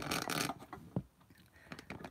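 Handling noise from the recording device being repositioned: a short rustle, then a single sharp knock about a second in, followed by a few faint clicks.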